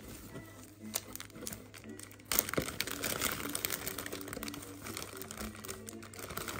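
Clear plastic bags and packing crinkling and rustling as hands rummage inside a cardboard box, louder from about two seconds in.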